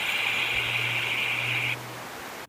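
Steady rush of creek water running over rocks, with a faint low hum beneath. It drops off sharply near the end.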